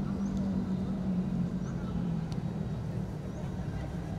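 Open-air sound of a football match in a nearly empty stadium: distant players' voices calling over a steady low rumble, with a few faint high chirps about a second apart.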